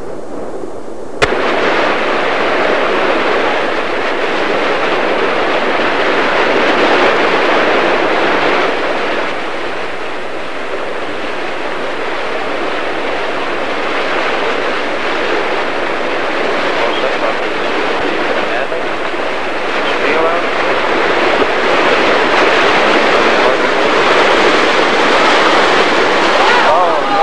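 Whitewater rapids rushing, a loud, steady wash of water noise. It starts with a sharp click about a second in, where the sound jumps louder.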